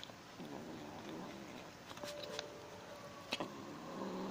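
Tabby kitten making low, wavering vocal sounds while eating fried chicken scraps, with a few sharp clicks.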